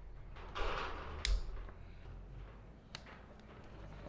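Rustling of wires being handled into a plastic Wago-style lever connector, with two sharp clicks nearly two seconds apart as the connector's levers snap shut on the wires.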